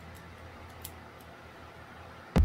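Faint, scattered light ticks of a small precision screwdriver working the tiny screws of an airsoft rifle's metal hop-up chamber, with the clearest tick a little under a second in, over a low steady hum.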